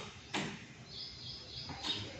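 Soft rustles of fingers working loose cocopeat and handling strawberry seedlings, with a faint high twittering chirp about halfway through.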